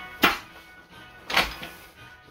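A padded soft guitar case is swung out of a cardboard box and set down on a counter: two loud scuffing bursts about a second apart. Background music plays underneath.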